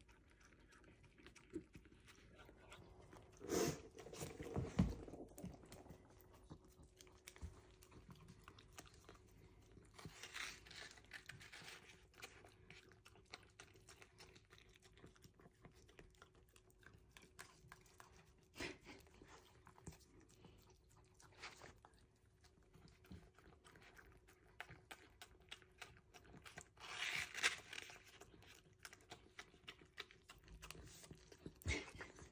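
Miniature dachshund licking ice cream from a hand-held cup: faint, steady small wet licking and smacking clicks, with a few louder bursts now and then.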